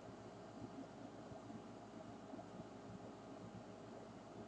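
Near silence: faint, steady room tone with a low hiss.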